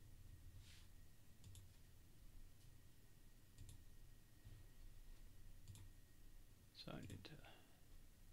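Near silence with a few faint, sparse computer mouse clicks, and a brief low voice sound among a quick cluster of clicks about seven seconds in.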